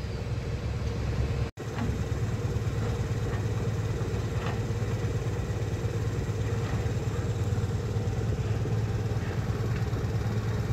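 Engine of a motorised two-wheeler running steadily as it rides along at low speed, a constant low drone. The sound cuts out for an instant about one and a half seconds in.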